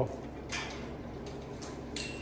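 Faint steady hum of a running wall-mounted electric unit heater, with a few light clicks, one about half a second in and one near the end.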